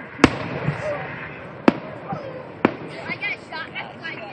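Aerial firework shells bursting: three sharp bangs about a second apart, the first just after the start and the loudest.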